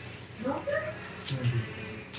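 A short high vocal call gliding up and then down in pitch about half a second in, followed by a brief low voice murmuring.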